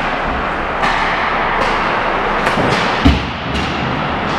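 Ice hockey practice on the rink: skate blades scraping the ice and sticks and pucks clacking over a steady rink hiss, with one heavy thump about three seconds in, the loudest sound.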